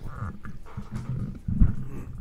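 Handling noise from a studio microphone on a boom-arm stand as it is gripped and repositioned: low rumbling bumps and rubbing, with a heavier thump about one and a half seconds in.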